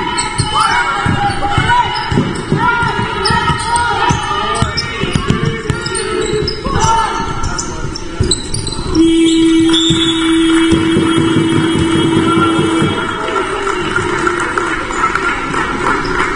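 Basketball dribbled on a sports-hall court, with sneakers squeaking on the floor. About nine seconds in, a steady buzzer tone sounds for about four seconds, after which the players leave the court.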